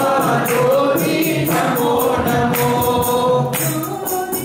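A group singing a Hindu devotional bhajan together in long, held notes, with small jingling hand percussion keeping a steady beat.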